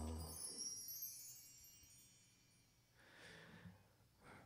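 Bar chimes (a mark tree of hanging metal rods) swept by hand: a quick cascade of high metallic tinkling that rings on and fades out over about two seconds. The last sung note is still ending as the chimes start.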